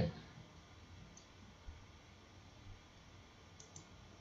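Quiet room tone with a few faint, short clicks: one about a second in and two in quick succession near the end.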